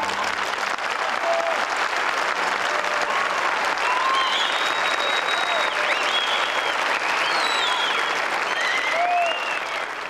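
A large audience applauding at the end of an opera performance: loud, dense, steady clapping that starts as the music stops, with a few voices calling out over it.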